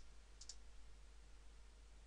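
Near silence: room tone with a few faint computer keyboard clicks in the first half second.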